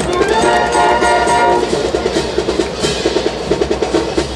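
Brass band playing a march, with short repeated notes pulsing several times a second over sustained tones.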